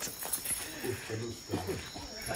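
Low, indistinct voices of people talking, over a steady high-pitched chirring of night insects.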